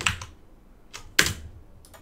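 Computer keyboard clicks: one at the start and a sharper, louder one a little over a second in, with a couple of faint ticks near the end.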